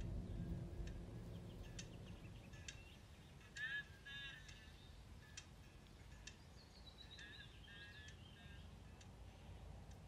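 Faint outdoor ambience with scattered bird chirps and calls. There is a cluster of calls about four seconds in and a falling call followed by more chirps near the end.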